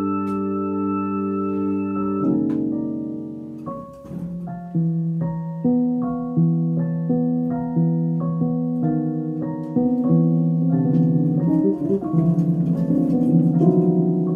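Electronic keyboard playing in an organ-like tone. It holds one chord, then about two seconds in moves into a slow tune of sustained notes, changing about once a second over a low held bass.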